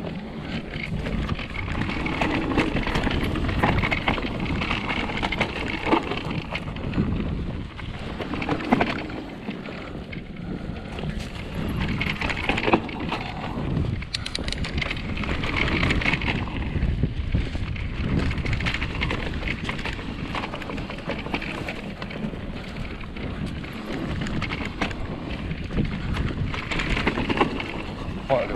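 Mountain bike riding down a dirt singletrack: a steady rush of wind on the microphone with tyres rolling over dirt and frequent short clicks and knocks as the bike rattles over bumps.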